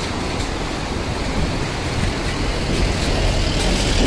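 Mountain stream rushing over rocks: a steady noise with a low rumble beneath it.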